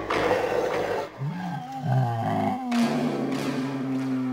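A deep roar that swoops up and down in pitch about a second in, running into a long held low note.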